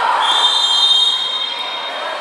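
Referee's whistle blown in one long, steady blast of about two seconds.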